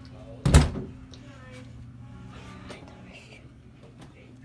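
A door thuds once, loudly, about half a second in. Faint whispering follows.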